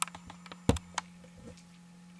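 A few sharp clicks and taps, the loudest a little after half a second in and another at about one second, over a steady low hum.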